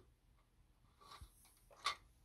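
Near silence, with a few faint short rustles and one brief, louder rustle near the end: a hand brushing along a glass fluorescent lamp tube to give it enough grounding to strike.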